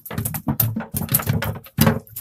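A freshly caught fish flapping on the wooden planks of a boat's deck: a quick, irregular run of slaps and knocks.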